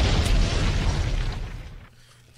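An explosion-like boom sound effect: a deep, rumbling burst that fades away over about two seconds.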